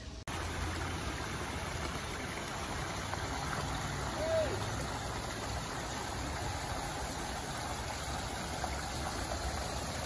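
Steady rush of water from a small garden stream running over rocks, with one short rising-and-falling note near the middle.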